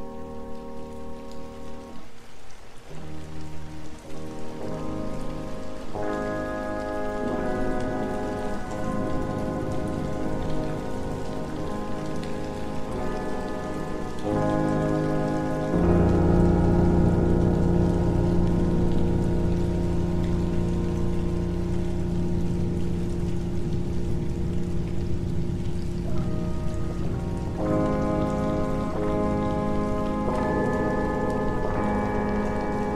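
Dark ambient music: held, sustained chords that shift every few seconds over a steady rain sound. A deep low drone comes in about halfway, and the music gets louder.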